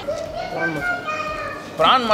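Speech only: a high-pitched voice talking at the table.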